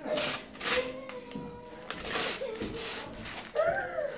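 Gift wrapping paper being torn open in several quick rips as a child unwraps a present, the loudest about two seconds in. A child's short voice sound comes near the end.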